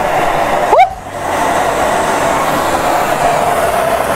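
Powdered milk-based baby formula blown through a tube into a lit propane torch flame: a steady rushing noise, broken about a second in by a short rising sound and a brief dip, then rushing on again until near the end.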